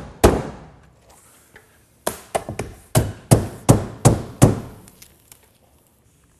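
Hammer blows driving cap nails through house wrap into the wall: one strike just after the start, a pause, then a quick run of about eight strikes, with a few fainter taps after them.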